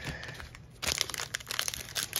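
Foil wrapper of a hockey card pack crinkling as it is handled and torn open, a dense run of crackles starting a little under a second in.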